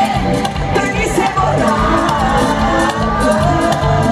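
Live Latin pop band and a woman's lead vocal playing loud through a stadium PA, heard from the stands over a steady bass rhythm, with the audience's cheering mixed in.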